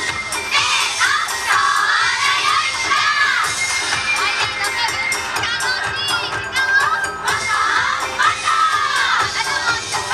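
Yosakoi dancers shouting together in chorus, long calls that rise and fall in pitch, repeated phrase after phrase.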